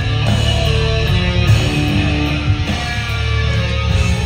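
Live rock band playing loudly: electric guitars, bass and drums, amplified through the hall's PA and heard from the audience.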